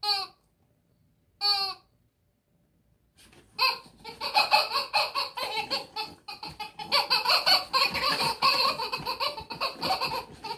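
Two short falling cries in the first two seconds. Then, from about three and a half seconds in, a person laughing hard and without a break.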